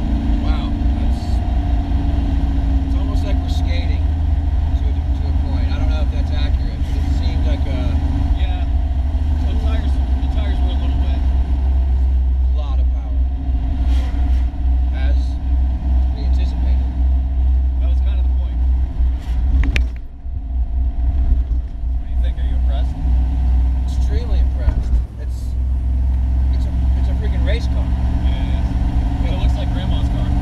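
Inside the cabin of a 1979 Ford Fairmont with a small-block Ford V8, the engine is running steadily under way with road noise. The engine note dips briefly twice, about twenty and twenty-five seconds in, then comes back.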